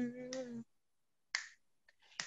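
A woman singing unaccompanied holds the last note of a worship line, which stops about half a second in. After a silent pause, a single short, sharp sound comes just past one second in.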